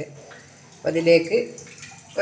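Cooking oil pouring in a thin stream from a bottle into a small steel pan, a faint trickle. A voice speaks briefly about a second in.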